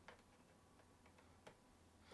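A few faint ticks over near silence: a small screwdriver turning a tiny screw in the aluminium bottom case of a MacBook Pro. The clearest tick comes about one and a half seconds in.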